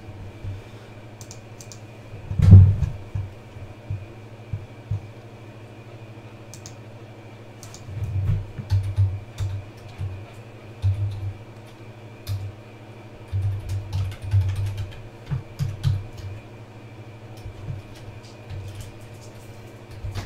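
Computer keyboard typing in irregular clusters of keystrokes, with one louder thump about two and a half seconds in.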